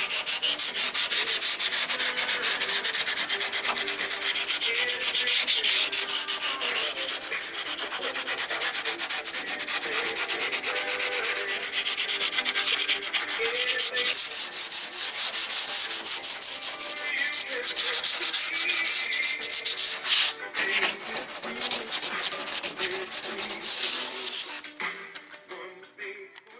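A sanding pad is rubbed by hand over the steel door of a 1966 Ford Mustang in rapid back-and-forth strokes, with a scratchy hiss. There is a brief break about twenty seconds in, and the sanding stops near the end. The metal is being scuffed and feathered smooth for primer.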